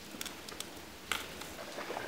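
Faint scuffs and clicks of hands and shoes on rock as people scramble up a steep rocky slope, a few scattered small knocks over a steady hiss.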